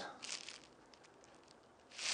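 Faint crinkly rustles and light clicks, mostly in the first half second, from hands handling a taped sheet of veneer and a plastic squeeze bottle of PVA glue while dabbing glue onto the tears.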